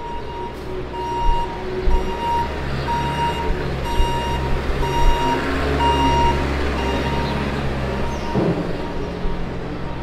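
Caterpillar wheel loader's backup alarm beeping steadily, about one and a half beeps a second, as the loader reverses, over its diesel engine running. The beeping stops about six seconds in while the engine keeps running.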